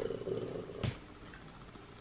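A person's low, rough voiced sound trailing off over the first second, then a single sharp click a little under a second in, followed by quiet room tone.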